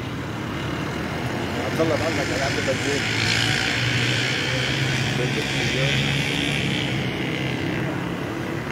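A car driving past on a wet road: tyre hiss swells from about a second in and fades near the end, over a steady low engine hum.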